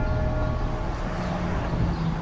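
Low, steady city-street rumble of traffic. A sustained music chord dies away during the first second.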